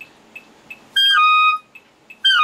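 Clarinet playing a short phrase between practice runs: after about a second of quiet with a couple of faint clicks, a high note that steps down to a slightly lower one, held about half a second and then cut off.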